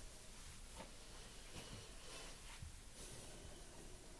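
Quiet room tone in a small room, with a few faint scattered clicks.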